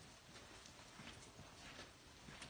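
Faint, irregular ticking of steps on a hard floor, several a second, as a dog searches the room with its handler following.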